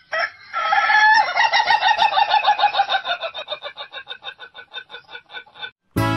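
Rooster crowing: one long call that breaks into a rapid stuttering run of short repeated notes, fading over about four seconds before it stops.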